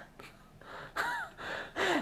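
A woman's few short breathy gasps of suppressed laughter, with a brief hummed rise and fall about a second in. It is an amused reaction just before she answers.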